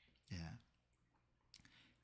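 Near silence: room tone, with one brief, quiet spoken word near the start.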